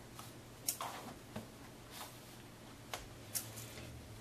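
Straight pins being pulled out of stiff interfacing-backed fabric: a few light, separate clicks and rustles of handling, over a faint steady hum.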